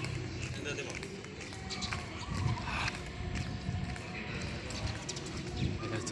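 Indistinct voices in the background, with footsteps and handling noise from a handheld camera carried at a walk on concrete.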